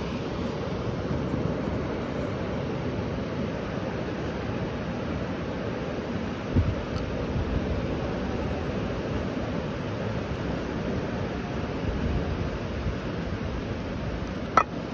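Surf washing onto a sandy beach, mixed with wind on the microphone, as one steady, even rush of noise. A brief thump about six and a half seconds in.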